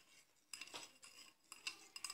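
A metal spoon stirring a thin liquid in a ceramic bowl, faintly clinking against the bowl several times.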